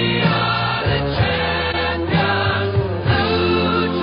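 Music with singing voices over a steady accompaniment.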